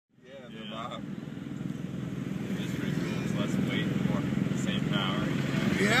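Pickup truck engine running with a steady low rumble, heard from inside the cab, fading in at the start. Voices call out over it several times, ending in a shouted "Yeah!" near the end.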